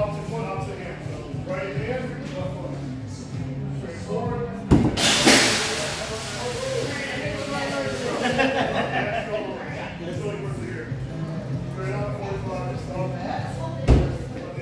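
A thrown axe striking the wooden target board with one sharp thunk about five seconds in, followed by about a second of loud noise, over steady crowd chatter and music echoing in a large hall.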